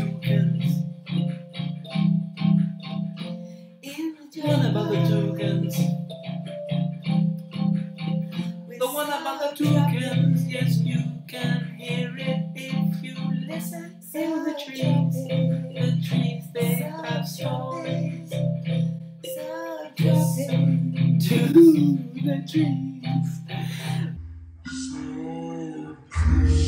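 Electronic keyboard playing a low, repeating chord pattern in phrases of about five seconds over a steady drum-machine beat, with two voices singing along. The pattern changes about two seconds before the end.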